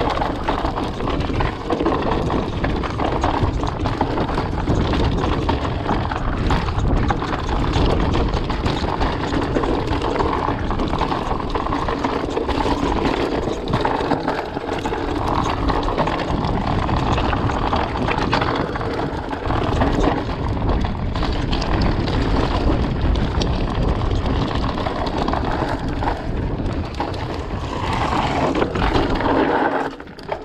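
Mountain bike descending a rocky trail, heard from a camera mounted on the rider or bike: constant wind buffeting on the microphone over tyres rolling on rock and loose gravel, with the bike rattling and knocking over bumps. The noise drops away right at the end as the bike slows.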